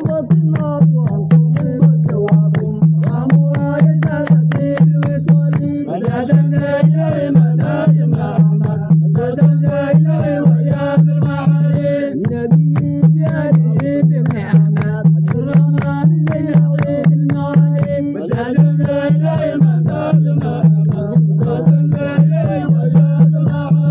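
Devotional song: a steady hand-drum beat over a held low drone, with a wavering melody line above.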